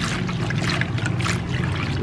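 A hand stirring and swishing soapy water in a basin, a continuous splashing and sloshing, with a steady low hum underneath.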